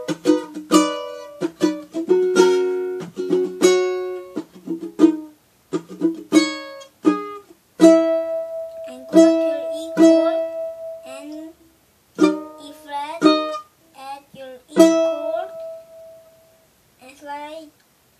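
Ukulele chords strummed by hand, played through as a slow chord progression, with short pauses about twelve seconds in and near the end.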